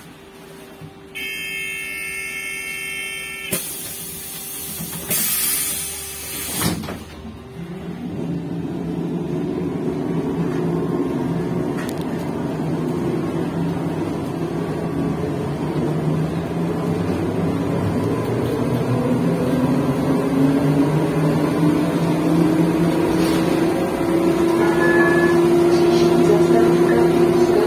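Škoda 15Tr03/6 trolleybus pulling away from a stop. A high electronic tone sounds for about two seconds, then the doors close with noisy bursts and a knock. After that the electric traction drive whines, rising steadily in pitch and growing louder as the trolleybus gathers speed.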